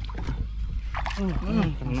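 A man's voice speaking a few words in Indonesian over a steady low hum, with a couple of short clicks in the first second.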